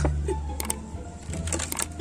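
Background music with a steady bass line, over which come several light clicks and knocks as hands handle the hardboard sliding lid of a wooden pigeon feeder, near the start, about halfway, and again near the end.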